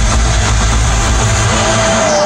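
Loud electronic techno from a live DJ set, heard through a phone microphone as a heavy, distorted bass. The bass drops out near the end.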